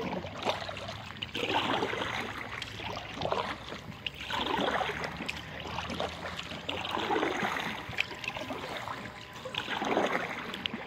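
Kayak paddle strokes in calm river water: a swishing splash every second or two as the blade dips and pulls through the water.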